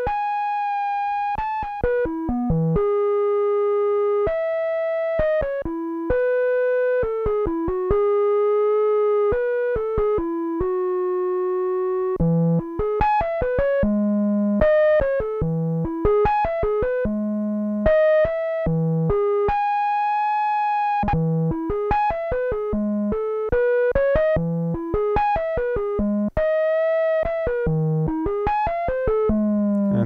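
Behringer DeepMind 12 analog synthesizer playing a soft, filtered square-wave flute patch: a slow melody of held notes, with lower notes mixed in during the second half. A slow LFO on pitch makes the notes drift in and out of tune, deliberately exaggerated here to imitate the unstable tuning of vintage analog synths.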